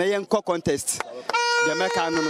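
A man talking, then about a second and a third in a single steady horn note starts and holds, with voices going on over it.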